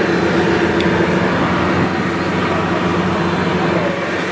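Boat engine running steadily, a constant droning hum with rushing noise, heard from inside the enclosed passenger cabin of a tender boat under way.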